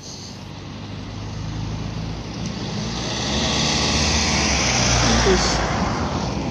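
Road traffic recorded on a phone: a car's engine and tyre noise growing louder as it approaches, loudest about four to five seconds in.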